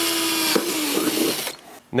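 Cordless drill running at speed, drilling a pilot hole through a thermoplastic mud flap into the fender for the top mounting screw. Its pitch dips and turns rough about half a second in as the bit bites, and it stops about a second and a half in.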